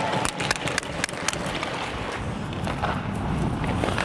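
Ice skate blades scraping and carving on rink ice close to a body-worn microphone, with a few sharp clacks in the first second or so.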